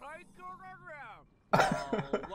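Speech: a character's voice from the anime episode for the first second or so, then a man's much louder voice breaking in sharply about one and a half seconds in.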